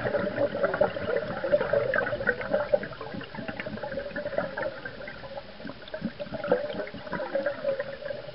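A scuba diver's exhaled bubbles gurgling out of the regulator, heard underwater. The bubbling comes in an irregular rush that eases a little midway, then picks up again.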